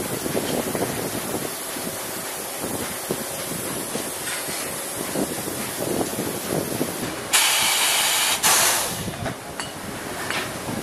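Steady factory machinery noise, then about seven seconds in a loud hiss of compressed air lasting about a second, followed by a second, shorter hiss.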